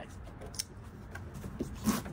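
A dulled folding-knife blade slicing through cardboard: faint ticks of handling, then one short, sharp swish of the cut just before the end.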